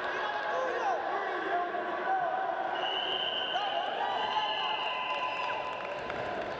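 Raised voices shouting over each other during a wrestling bout, with dull thuds of feet and bodies on the wrestling mat. A steady high tone is held for about three seconds from around the middle.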